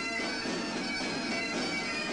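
Highland bagpipes playing a march, the drones holding steady tones under the chanter's tune.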